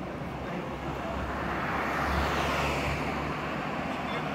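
A motor vehicle passing by: its rumble and road noise swell to a peak about two seconds in, then fade.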